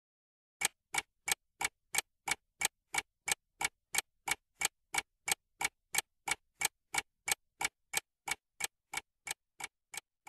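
Clock-ticking sound effect marking a quiz countdown timer, about three even ticks a second, starting just under a second in and growing fainter near the end.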